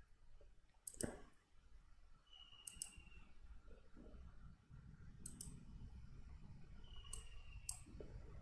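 Faint computer mouse clicks: a handful of separate clicks a second or two apart over quiet room tone.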